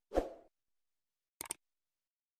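Video-editing sound effects: a short slide-transition effect lasting about a third of a second just after the start, then two quick mouse-click sounds from a subscribe-button animation about a second and a half in.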